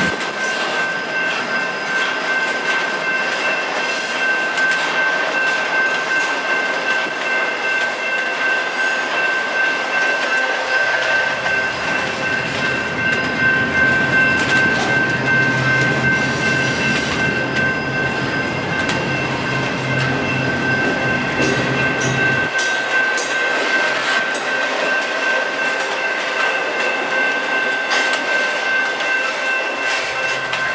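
Intermodal freight train of double-stack container well cars and trailer flatcars rolling past at close range: steady noise of the wheels on the rail with frequent short knocks and a sustained high-pitched squeal. A low hum comes in about a third of the way through and cuts off suddenly about three quarters through.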